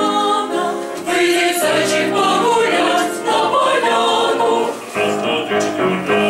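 Small student choir, mostly young women's voices, singing in parts to a conductor, with a short break in the phrasing about a second in and another shortly before five seconds.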